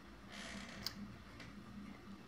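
Quiet room tone with a steady low hum, broken by a soft rustle and a small sharp click a little before the middle, then a fainter tick.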